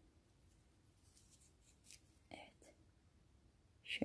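Near silence: room tone, with a few faint, brief whispered sounds a little past halfway.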